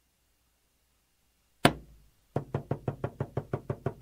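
After a second and a half of near silence, a drum is struck once and rings. Then a fast, even drumbeat starts, about seven strokes a second.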